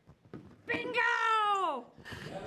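A woman's voice calling out one high, drawn-out shout of about a second, its pitch falling away at the end.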